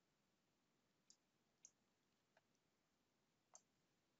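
Near silence broken by four faint computer mouse clicks, the last and loudest near the end.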